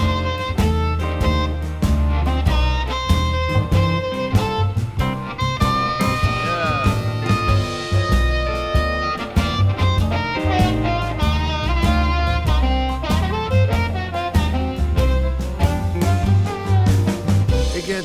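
Instrumental break of a blues-rock song played back from a vinyl record: a full band over a steady bass and drum beat, with a held, bending lead note in the middle.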